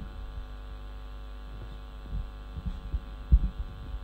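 Steady electrical mains hum, with a few dull low thumps of a handheld microphone being handled, the loudest a little after three seconds in.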